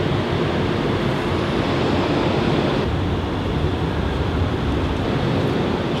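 Steady city background noise: a constant low rumble and hiss with a faint steady hum running underneath.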